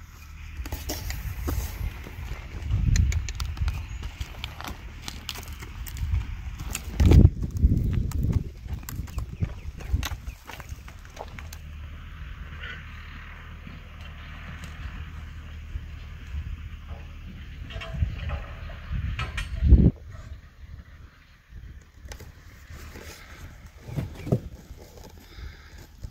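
A saddled paint horse being led on dirt: scattered hoof steps and footsteps with irregular knocks, under a steady low rumble that surges loudly a few times.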